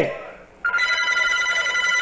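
Steady high electronic telephone tone, like a ring or beep on a phone line, starting about half a second in and held unbroken without any pulsing.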